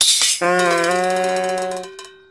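A short musical transition sting: it opens with a sudden rattling burst, then holds a chord over a fast, shimmering rattle, and fades out near the end.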